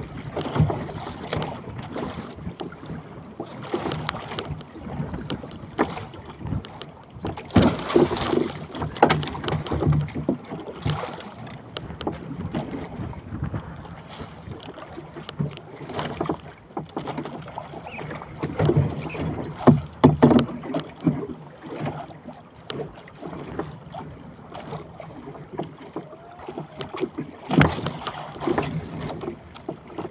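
Wind buffeting the microphone and choppy water slapping against a small outrigger fishing boat. It comes in uneven surges, with a few sharp knocks.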